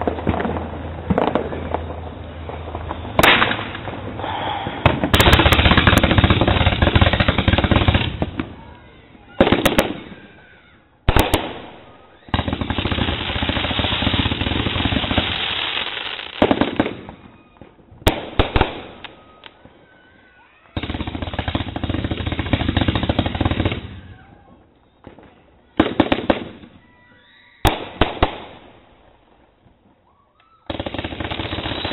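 Consumer fireworks going off: sharp single bangs and three long stretches of dense, rapid reports of about three to four seconds each, with quieter lulls between.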